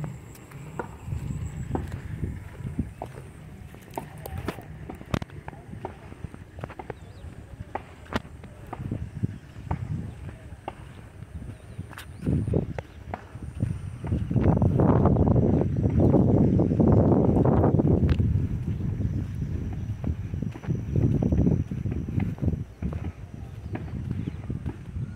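Footsteps on a dirt path, with many short scuffs and clicks from walking with a handheld camera. A few seconds past the middle there is a louder stretch of dense noise lasting about four seconds.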